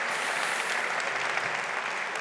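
Audience applauding, a steady even clapping that tails off slightly near the end.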